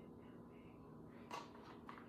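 Near silence: faint room tone with a steady low hum, broken by two soft clicks, one about a second and a half in and a weaker one near the end.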